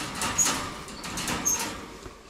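Wire-mesh pet cage being shut and latched: metal mesh rattling with a string of clicks, and two brief high squeaks.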